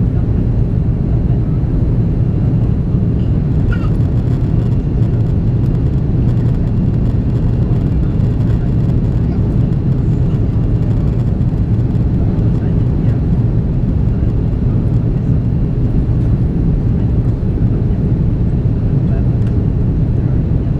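Steady low drone of cabin noise inside an Airbus A330-343 in its climb, the engine and airflow noise of its Rolls-Royce Trent 700 engines heard through the fuselage, strongest in the low range and unchanging throughout.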